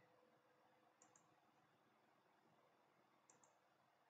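Near silence, broken by two faint double clicks of a computer mouse, about a second in and again near the end.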